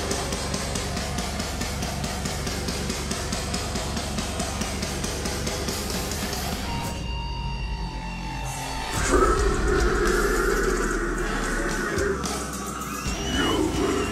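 A heavy metal band playing live: distorted electric guitars, bass and drum kit in an instrumental passage without vocals. About seven seconds in, the high end drops out for about two seconds while the bass carries on. Then the full band comes back in louder.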